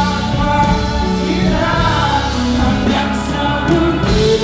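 Live band music with male vocals singing over electric guitar, bass and drums.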